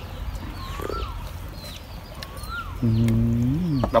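A cow moos once near the end, a low steady call of about a second that bends in pitch as it ends. A bird repeats a short whistled call in the background.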